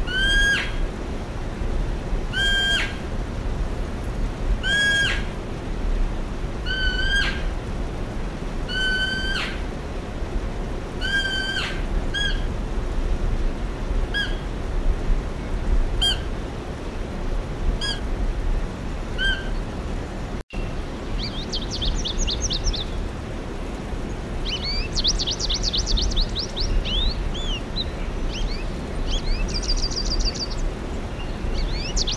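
A short, pitched call with a hook at its end, repeated about every two seconds and growing fainter. After a sudden brief break about twenty seconds in, small finches (goldfinches) twitter in quick, high trills.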